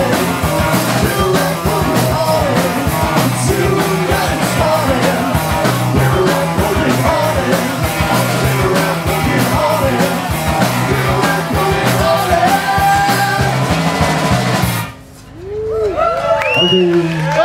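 Live garage-punk band playing loud: distorted electric guitars over a fast, busy drum kit. The song cuts off abruptly about a second before the end.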